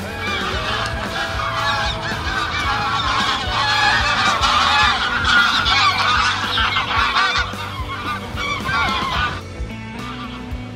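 A flock of geese honking in flight, many calls overlapping, swelling to a peak midway and dying away about nine and a half seconds in.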